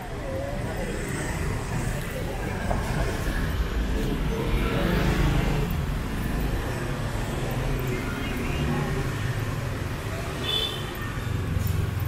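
Street traffic, mostly motorbikes passing on a wet road. One passes closer about five seconds in. Faint voices can be heard around.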